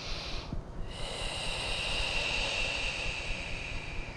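A deep, slow breath out through the nose, a long airy exhale taken on a cued full breath cycle. It begins about a second in and fades near the end.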